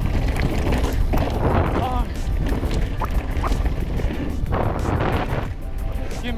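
Wind buffeting an action camera's microphone as a mountain bike rolls fast down a dirt trail, a steady low rumble, under background music.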